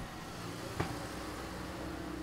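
A car running close by on a street, a steady engine hum under traffic noise, with a single sharp click just under a second in.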